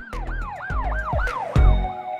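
Siren-style sound effect in a hip-hop intro: a fast yelp that sweeps up and down about four times a second over deep bass hits. Near the end it gives way to a heavy bass hit and a held tone.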